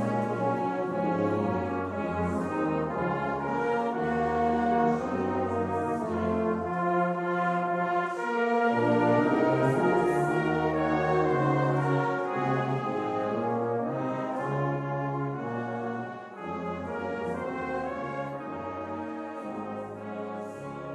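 Brass band playing a slow hymn tune in sustained chords, moving from chord to chord, with a brief softening about sixteen seconds in.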